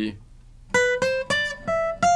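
Steel-string acoustic guitar: single picked notes climbing a scale in D Dorian, each a little higher than the last, at about three a second, starting just under a second in.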